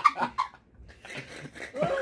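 A woman and a man laughing hard. The laughter breaks off about half a second in, goes nearly quiet, and picks up again near the end.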